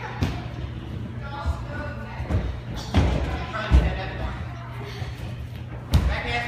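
Gymnasts landing on foam mats and the sprung floor: about six dull thuds at uneven intervals, the heaviest a little past the middle, in a large echoing gym with children's voices and music in the background.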